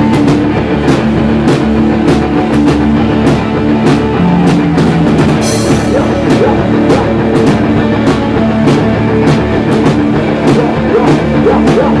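Live rock band playing an instrumental passage: electric bass, electric guitar and a drum kit keeping a steady beat of about two hits a second. A brief bright crash comes about five and a half seconds in.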